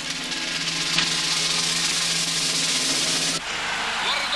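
Orchestra with a timpani roll on a held low chord, swelling in a crescendo and cutting off abruptly about three and a half seconds in.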